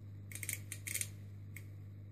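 Small, sharp metallic clicks and scrapes in three short clusters as wire leads are pressed against the contacts of a small circuit board, over a steady low electrical hum.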